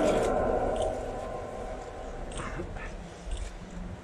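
An amplified call through an outdoor loudspeaker echoes and dies away over the first second. Then comes low outdoor background noise from a large, silent standing crowd, with a few faint short sounds.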